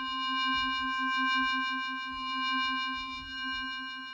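Korg Kronos MOD-7 FM synth patch holding one note: a low tone with a fast pulsing flutter and a bright ring of steady overtones above it. It swells, wavers in level and fades out near the end. To its maker it sounded funny, almost as if the LFO were running faster than normal.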